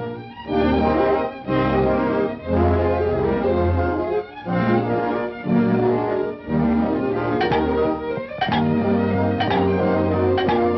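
Orchestral cartoon score led by bowed strings, with low bass notes moving in short phrases. In the second half, sharp accents land about once a second.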